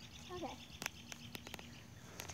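A few sharp clicks in quick succession about a second in, over a faint steady low hum.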